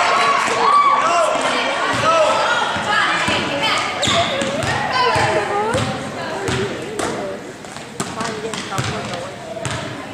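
A basketball being dribbled on an indoor gym floor, its bounces coming mostly in the second half and echoing in the hall, under overlapping voices of players and spectators calling out, loudest in the first half.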